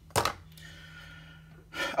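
A short, sharp intake of breath, followed by a faint, longer breath before talking resumes near the end.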